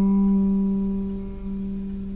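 A single electric guitar note, G fretted at the fifth fret of the D string, ringing on and slowly fading.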